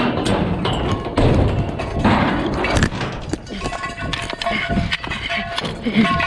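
Repeated thuds and knocks from a bull and rider shifting in a rodeo bucking chute. A busy noisy wash is heaviest in the first half, and held musical notes come in underneath about halfway through.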